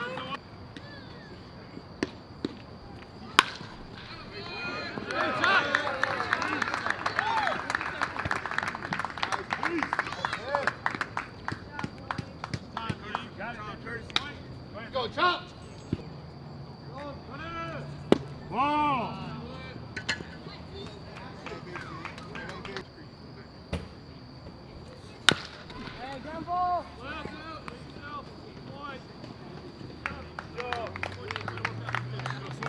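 Ambient sound of a baseball game: scattered voices and shouts from players and spectators, with three sharp cracks, about three seconds in, in the middle and near the end.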